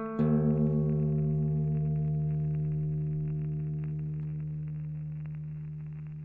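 A guitar chord struck once, just after the start, left to ring out and fade slowly.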